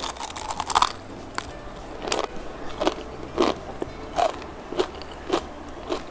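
Crispy lacy Milo crepe (kuih sarang laba-laba) bitten with a burst of crunching, then chewed, crunching about every two-thirds of a second.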